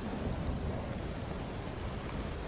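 Steady low rumble and hiss of a thunderstorm with rain, running on evenly.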